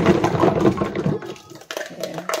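Hands rummaging in a plastic washing-up basin of soapy water, with plastic baby-bottle parts clattering together and water sloshing. It starts suddenly, is loudest for about the first second and a half, then dies down.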